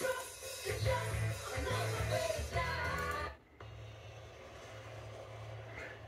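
Film soundtrack playing from a DVD: the end of the rock title song with singing over a steady bass, which cuts off suddenly about three seconds in, leaving a much quieter, steady low background sound as the next scene starts.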